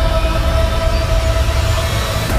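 Trailer score: a single high note held for about a second and a half over a deep, steady low rumble.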